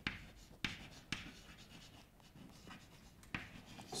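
Chalk writing on a blackboard: faint scratching with a few sharper taps in the first second and another near the end.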